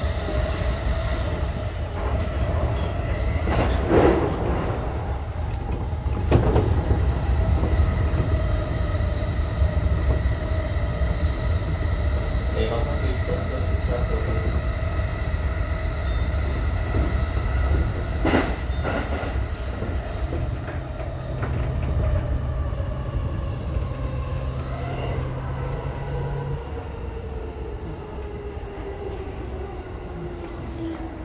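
Electric commuter train running, heard from the driver's cab: a steady rumble of wheels on rail with a few sharp clacks over the rails. Near the end a whine slowly falls in pitch and the sound eases as the train brakes into a station.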